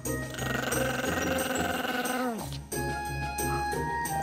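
Background music, with a Pomeranian's long drawn-out vocalising over it. The dog's sound slides down in pitch and stops about two and a half seconds in.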